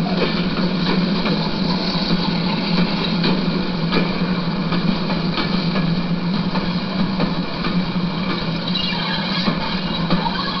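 A model railway train running past close by: the locomotive's motor whirring steadily, with the wheels clicking over rail joints every so often.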